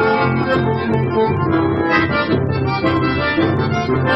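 Chamamé played live on piano accordion and bandoneón over a rhythmic electric bass line, the reeds holding chords and melody notes.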